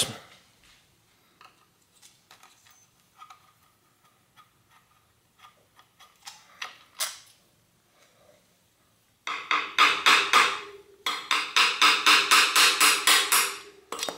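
Faint scattered clicks of small metal shifter parts being handled. About nine seconds in, these give way to a rapid, loud run of metal-on-metal taps with a ringing tone, a screwdriver tapping on the bicycle's downtube shifter hardware.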